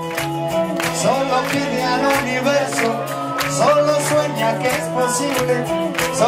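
A live band playing loud music with a steady drum beat, about two hits a second, under held bass and chords. A male voice sings or shouts into the microphone at times.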